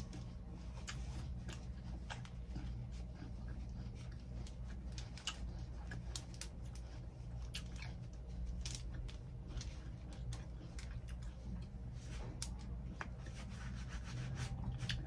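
Close-miked chewing of juicy fresh fruit: wet mouth clicks and small crunches come irregularly throughout, over a steady low hum.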